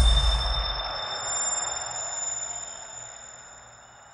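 Film sound-design ear ringing after a heavy punch: a low boom dies away in the first second, and a steady high-pitched ringing of several pure tones holds over a muffled crowd haze that slowly fades.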